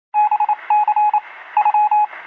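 Electronic beeps at one steady pitch, switched on and off in quick groups of short and long tones like Morse code.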